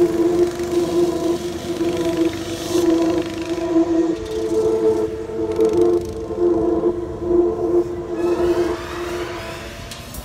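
Go-kart engines running on the track, a steady drone.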